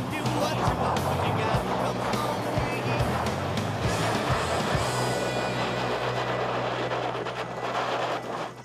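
Articulated truck's diesel engine running hard under load as it climbs with momentum, mixed with background music that has a steady beat through the first half.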